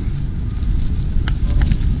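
Wind rumbling on a handheld action camera's microphone, with light, irregular clicks and knocks over it.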